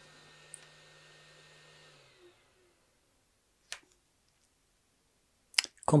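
A few sharp clicks from handling a microphone cable's newly fitted XLR plug: a faint one, a clearer one a little past the middle, and the loudest just before the end.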